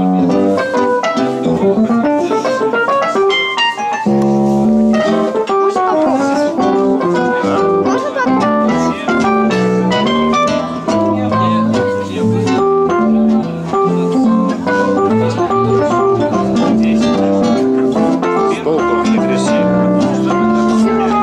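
A classical guitar and a Roland electronic keyboard playing together, with a steady flow of notes and held chords.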